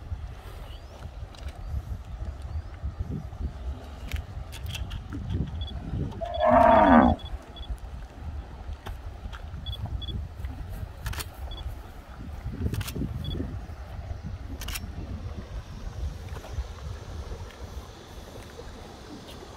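Cattle mooing: a single loud moo about six seconds in, lasting about a second, over a steady low rumble.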